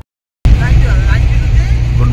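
Steady low rumble of a car heard from inside the cabin, starting abruptly about half a second in after a brief silence, with a voice faintly over it.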